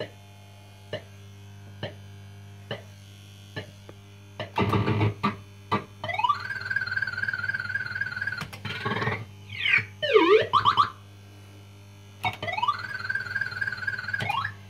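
PCP System 80 fruit machine's electronic sound effects over a low hum. A few ticks come about once a second, then a burst of bleeps, then a rising tone held steady for about two seconds. A flurry of quick up-and-down sweeps follows, and near the end another rising tone.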